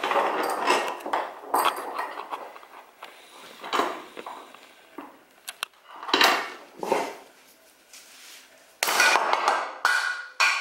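Metal clanks and knocks as a black 3D-printed plastic part is clamped in a small steel drill-press vise, then near the end a hammer hits it hard, testing whether the printed arm breaks off.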